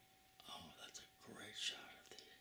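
A person whispering quietly for about a second and a half, the words unclear.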